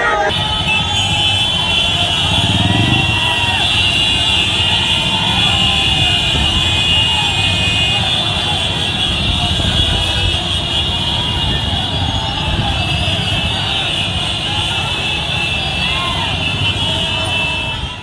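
Crowded street traffic: motorcycle and car engines running among a dense crowd, with a steady high-pitched din of many horns and scattered voices.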